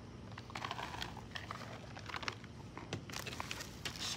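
Faint chewing of a mouthful of MRE nut and raisin trail mix, with scattered small clicks and light crinkling of its plastic pouch.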